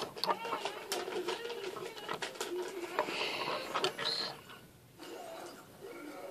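Small plastic building-toy pieces clicking and knocking as a figure is handled. The clicks are scattered and light, and they stop a little past the middle.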